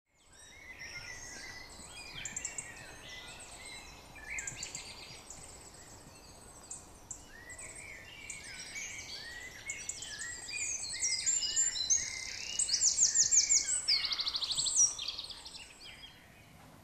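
Several songbirds singing at once in a dense, overlapping chorus of chirps, whistles and fast trills. It grows louder about two-thirds of the way in and then drops away just before the end.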